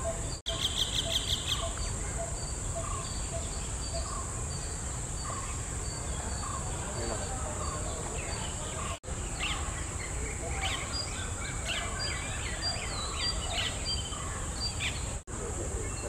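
Coppersmith barbet calling, a monotonous series of short low 'tuk' notes at about one and a half a second, through the first half. A steady high insect drone runs underneath, other small birds chirp in the second half, and the sound drops out briefly three times.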